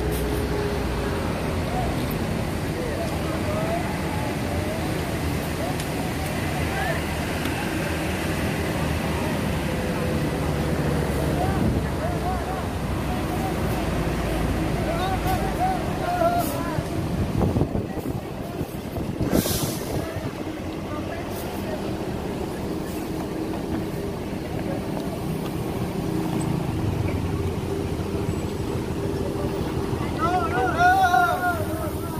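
Large tour buses' diesel engines idling with a steady low hum, under scattered voices of people standing around. A short hiss comes about two-thirds of the way through.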